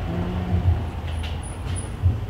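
A steady low machine hum with no speech. A brief faint tone comes in near the start.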